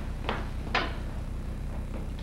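Two short knocks about half a second apart, the second louder, over a steady low hum.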